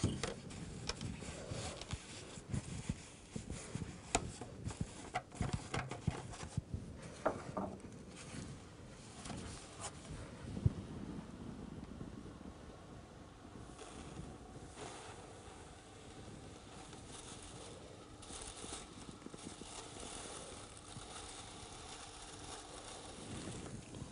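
Liquid nitrogen being poured from a dewar over a rubber balloon: soft knocks and clicks of the container being handled for the first ten seconds or so, one sharper knock about eleven seconds in, then a faint steady hiss as the nitrogen boils off.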